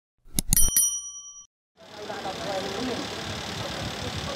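Subscribe-button sound effect: a few quick clicks followed by a short bell-like ding. After a brief silence, outdoor crowd and street noise with indistinct voices comes in about two seconds in.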